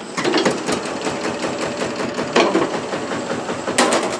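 Small engine of a site dumper, started with a hand crank, running with a fast, even clatter.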